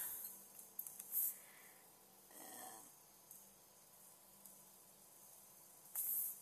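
Quiet room with a faint steady hum, a short breathy hiss about a second in, and a soft audible breath around two and a half seconds in.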